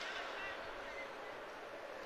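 Ice-rink arena ambience during a stoppage in play: faint distant voices over a steady hiss of hall noise, with one sharp click right at the start.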